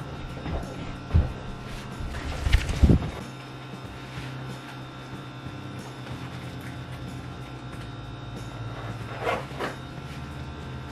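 Handling noises from pulling on and adjusting black thigh-high boots: rustling and a few knocks, the loudest a cluster about two and a half to three seconds in, with another short one near the end.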